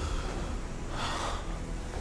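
A man gasping, one sharp breath about a second in, over a steady low rumble.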